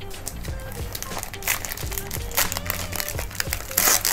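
Background music, with the plastic wrapper of a trading-card cello pack crinkling and tearing open in short bursts, the loudest near the end.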